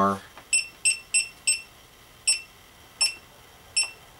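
GoPro HD HERO camera beeping as its front mode button is pressed to step through the menu: seven short, high beeps, four in quick succession and then three more spaced out.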